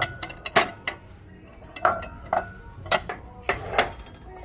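Stacked ceramic bowls clinking against each other as they are handled: about seven sharp clinks spread across the few seconds, a few of them ringing briefly.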